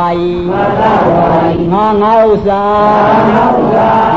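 A Burmese Buddhist monk chanting in a sermon's intoning style, with long held notes that step up and down in pitch.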